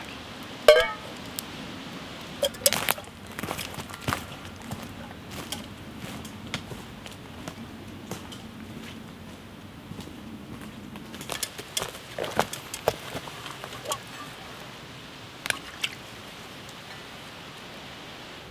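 Footsteps through dry leaf litter and twigs: irregular crunches and small snaps as a person walks across the woodland floor. There is a brief clink from the carried pots about a second in.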